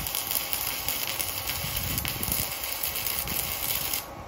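Stick-welding arc from a miniature handheld stick welder set to 140 amps, burning a rod up a vertical joint: a steady, dense crackling hiss. It breaks off abruptly at the very end, as the little machine trips into an error at that setting.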